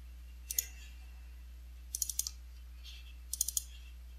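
Computer mouse button clicks: a single click about half a second in, then quick groups of clicks around two seconds and three and a half seconds in, double-clicks opening folders in a file browser.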